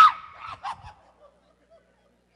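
A man's voice crying out in mock pain, acting out being sprayed in the eyes. The cry falls in pitch and trails off within the first second, with a few faint vocal sounds after it.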